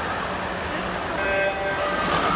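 Electronic start signal for a backstroke race, a short steady tone about a second in, over a steady background of crowd noise. The noise grows louder as the tone sounds and the swimmers push off.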